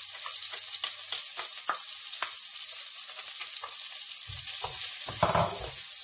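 Minced garlic sizzling in hot margarine in a nonstick frying pan: a steady high hiss with scattered crackling pops. Near the end there is handling noise with a single knock, as a spatula starts stirring the garlic.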